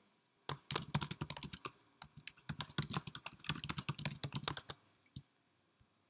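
Typing on a computer keyboard: a quick run of keystrokes with a short pause about two seconds in, then a single mouse click about five seconds in.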